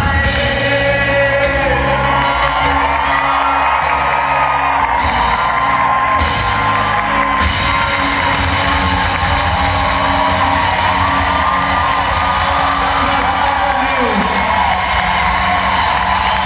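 Live rock band playing a song: singing over acoustic guitar, electric bass and drums, heard from within the audience.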